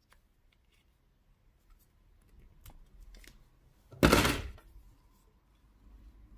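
Glue-lined heat-shrink tubing being snipped to length: one sharp cut about four seconds in, with faint handling rustles and light clicks before it.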